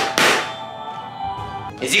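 A hand tapping on a plastic Magic Mixies Magical Misting Cauldron toy, one tap at the start, followed by soft steady musical tones.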